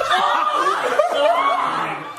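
Several people laughing at once, their higher-pitched voices overlapping.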